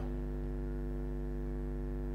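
Steady electrical mains hum with a buzzy edge from the church PA system, an even drone made of many stacked tones that does not change.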